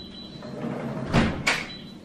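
A door banging twice, two sharp knocks about a third of a second apart a little past one second in, amid lighter handling noise.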